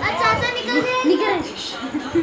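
A toddler's high-pitched voice vocalizing for about a second and a half, then fading.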